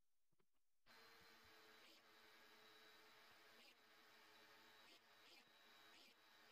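Near silence: a few faint clicks, then a very faint steady hum with a thin high tone underneath, starting about a second in.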